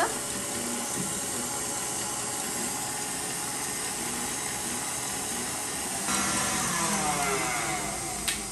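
KitchenAid tilt-head stand mixer running steadily, its wire whip beating egg whites in a steel bowl as sugar is added, whipping them to stiff peaks. Its motor note falls over the last couple of seconds.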